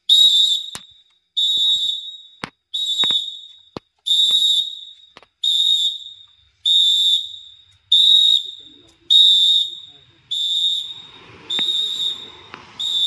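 Instructor's whistle blown in short, evenly spaced blasts, about one every 1.2 seconds, giving the count for a group exercise.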